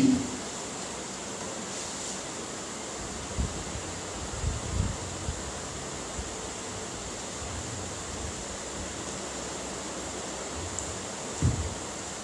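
Steady background hiss with a faint high-pitched whine, broken by a few soft low thumps.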